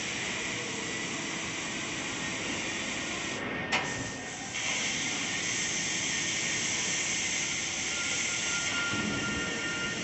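Fiber laser cutting machine cutting 10 mm carbon steel, its cutting head giving a steady hiss. A sharp click comes a little under four seconds in, with a short dip in the hiss, which then goes on a little louder.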